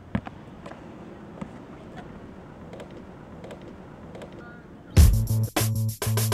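Faint outdoor ambience with a few soft, irregular thuds of a basketball dribbled on an asphalt court. About five seconds in, loud music with a heavy drum beat and bass cuts in.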